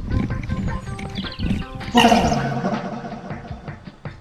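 A cow mooing: one long, loud, low moo starting about halfway through and fading out.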